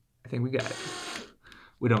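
A man's voice: a short utterance about a quarter of a second in, then more speech starting near the end.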